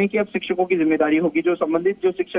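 Only speech: a man talking continuously in Hindi over a narrow-band phone line.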